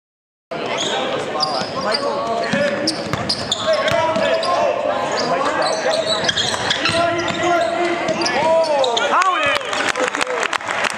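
Indoor basketball game sound: a basketball being dribbled on a hardwood court, with sneakers squeaking on the floor, under the voices and shouts of players and spectators echoing in the gym. Several sharp squeaks come near the end.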